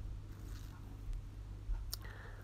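Quiet room tone with a low steady hum, and one short click near the end.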